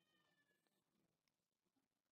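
Near silence: the sound drops to almost nothing in a pause between spoken lines.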